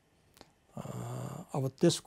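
A man speaking in an interview: a short pause, then his voice resumes with a drawn-out sound and the start of a word.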